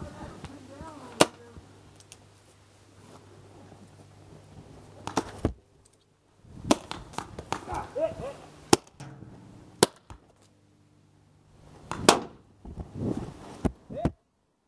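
Paintball pistols firing: about six sharp pops, spaced a second or more apart.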